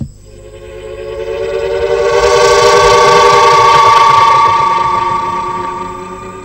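A sustained synthesizer chord swells up to a loud peak about three to four seconds in, then fades away: a dramatic music sting.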